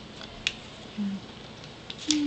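Small handling sounds of a tiny fabric bag, ruler and pencil over a paper sheet on a tabletop: one sharp click about half a second in, a few faint ticks, and a brief low hum about a second in.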